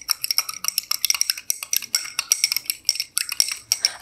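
A stirrer clinking rapidly and unevenly against the inside of a small beaker while copper sulfate crystals are stirred into water to dissolve them.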